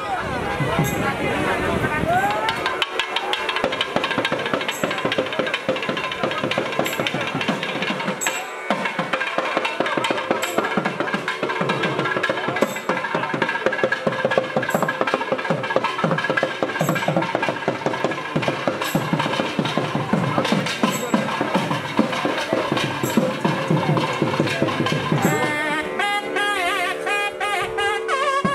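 Temple procession percussion: fast, dense drumming with a sharp clash about every two seconds, and voices mixed in.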